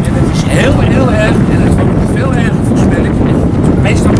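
Indistinct talking half-buried under a loud, steady low rumble of outdoor noise on the microphone, which spoils the recording.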